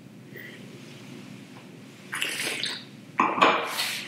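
A person tasting red wine from a glass: two short, airy draws of breath and wine, about a second apart, the second louder.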